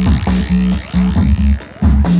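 Korg analog synthesizer music: a short repeating bass-note pattern, with a high filter sweep that rises and falls over it.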